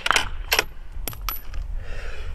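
The rifle's bolt being worked after a shot: a handful of sharp metallic clicks and clacks, some with a brief high ring like a spent brass case being ejected and landing.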